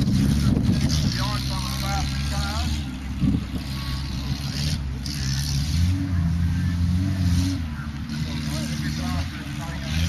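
Suzuki SJ four-wheel drive's engine revving through a mud course, its note rising and falling as the driver works the throttle, with a steadier, louder stretch a little past the middle.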